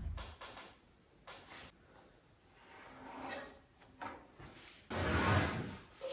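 Wooden boards being handled on a pine door panel: a few light knocks and clicks, then, about five seconds in, a louder scrape and thud as a long wooden batten is dragged up off the door.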